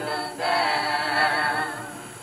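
Vocal group singing gospel a cappella in harmony. A new phrase begins about half a second in, and the singing fades toward the end.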